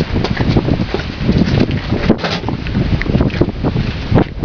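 Gusty wind buffeting the camera microphone: an uneven, low rumbling noise.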